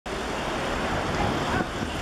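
Steady outdoor background noise, like distant road traffic.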